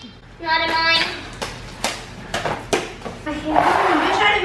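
Children's high voices: a drawn-out wordless call early on, more voices near the end. In between come four sharp clicks, about half a second apart.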